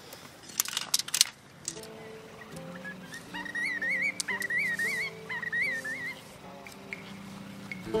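A few sharp knocks and clacks of tent poles being handled, then background music starts: sustained low notes with a warbling high melody over them in the middle.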